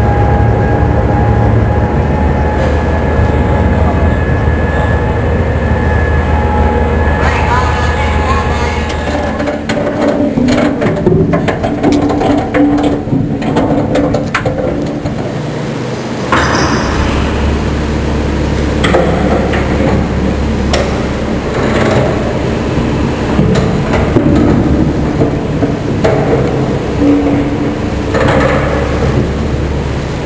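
Steady low machinery hum that cuts out about nine seconds in and starts again some seven seconds later. Metal clanks and knocks fall in the gap, with voices in the background.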